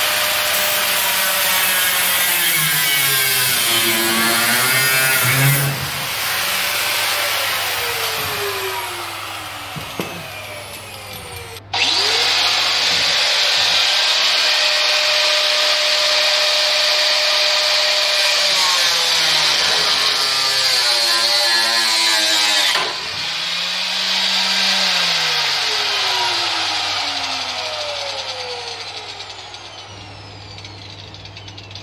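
Handheld electric power tool running hard against a bus panel. Its motor falls off about six seconds in, starts again suddenly near twelve seconds, and winds down once more about 23 seconds in, its pitch rising and falling with the load.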